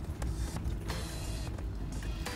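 Off-road 4x4 driving slowly over a rough, rutted track, heard from inside the cab: a steady low engine and drivetrain rumble, with a few sharp knocks from the body and suspension over the bumps.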